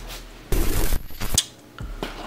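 Cardboard shipping box being handled at the start of an unboxing: a short loud scraping rush about half a second in, then a few sharp clicks.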